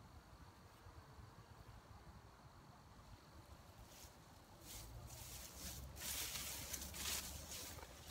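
Faint outdoor background, then, from about five seconds in, louder bursts of rustling noise and low rumble on the phone's microphone.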